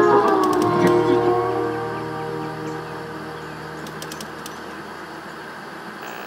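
Intro music whose held notes bend downward and die out over the first second or so, giving way to a hiss of TV-style static that slowly fades, with a few crackles.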